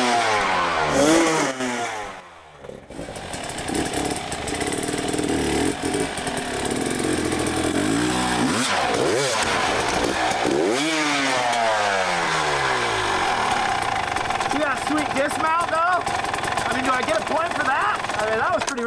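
Dirt bike engines revving up and down in repeated throttle blips as the bikes are ridden over a log obstacle, with a short lull about two seconds in.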